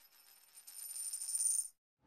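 Slot-machine sound effect of coins jingling out in a cascade over a high ringing tone. It starts about half a second in, swells, and cuts off suddenly just before the end.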